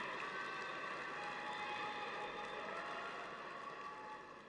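Faint, steady arena ambience in an ice rink, a low reverberant hum of the hall and crowd, dropping a little near the end.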